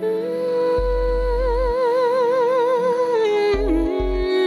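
A female singer holds one long note with vibrato into a handheld microphone over a steady backing accompaniment, then moves down to a lower note near the end.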